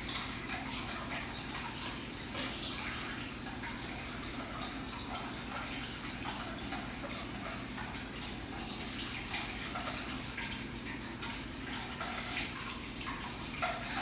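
Steady low room noise: a faint even hiss over a low hum, with scattered light ticks and rustles and no single loud event.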